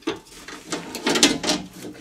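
2010 Mitsubishi Outlander's door window glass being worked into the rubber seal groove inside the door: a run of knocks, clicks and scrapes of glass against seal and door frame, busier and louder in the second half.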